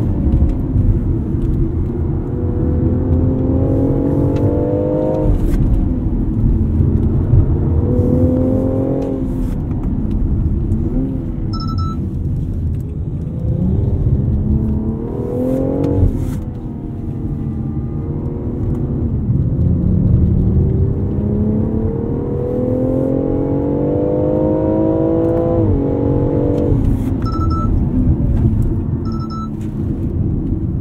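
BMW X4 M40i's turbocharged 3.0-litre inline-six, heard from inside the cabin while driven hard on a track. The engine pitch climbs steadily through each gear and drops sharply at each upshift, several times over, with a few stretches of falling revs as the car slows.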